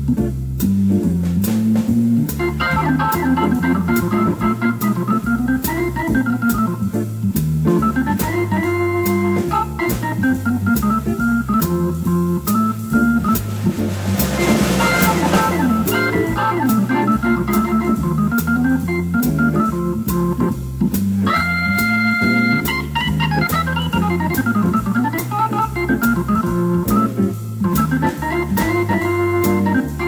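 Jazz-blues instrumental led by Hammond organ, with a low walking line underneath and drums keeping steady time on cymbals. About halfway through there is a brief cymbal swell, and a few seconds later the organ holds a bright high chord.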